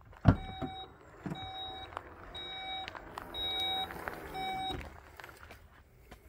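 Electric tailgate of a 2016 VW Touareg opening from the key fob: the latch releases with a click, then the motor lifts the tailgate with a whine that falls in pitch as it reaches the top. A warning beep sounds about once a second while it moves, five beeps in all.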